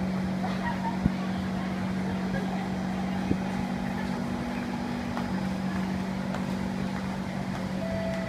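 Busy underground train station concourse: a steady low hum with faint voices of passing commuters, and two sharp knocks, one about a second in and another just past three seconds.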